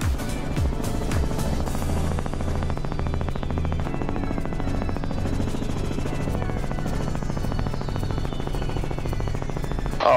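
Robinson R44 helicopter in flight: a steady, rapid chop from the two-blade main rotor over the engine, heard from a camera mounted outside the aircraft, with music mixed in.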